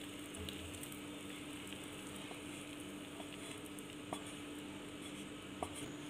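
Thick cooked apple jam being tipped from a pan into a glass bowl: faint soft clicks from the utensil and pan about two, four and five and a half seconds in, over a steady low hum.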